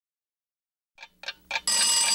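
Cartoon alarm-clock sound effect: three quick ticks, about four a second, starting a second in, then a steady bell ringing of several high tones.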